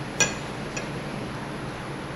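A single sharp metallic clink, with a short high ring, from the hand-held soft-plastic injector and clamped mold being handled, followed by a much fainter tick, over a steady background hiss.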